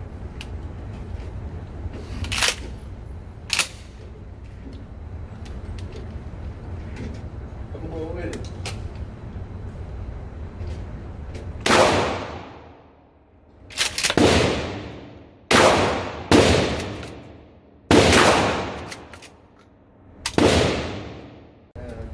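12-gauge Mossberg 500 pump shotgun firing slugs in an indoor range: six loud shots over the last ten seconds, one to two and a half seconds apart, each ringing off the walls and dying away slowly. Two fainter, sharp cracks come a few seconds in.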